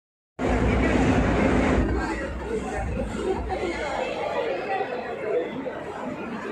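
Indistinct chatter of many shoppers in a large shopping-mall atrium, with no single voice standing out. The first second and a half is louder, with a heavy low rumble under the voices.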